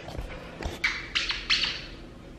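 A squeaky rubber dog toy squeezed three times in quick succession, short high squeals, held up to tempt a Pomeranian puppy.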